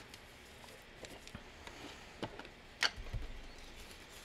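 Quiet handling of craft supplies: a few light clicks and taps as a Distress Ink pad's plastic lid is taken off and a foam ink blending tool is picked up, with soft handling of a crumpled book page. The sharpest click comes near the end, followed by a dull low thump.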